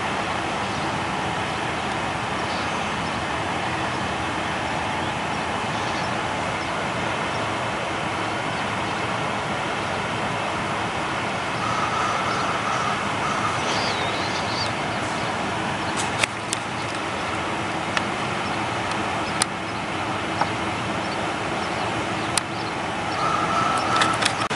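Steady outdoor background noise of distant road traffic, with a few sharp clicks in the second half.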